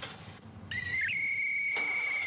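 A whistle blown in one long, high, steady note. It starts under a second in, steps up in pitch at the start, and is held for about a second and a half.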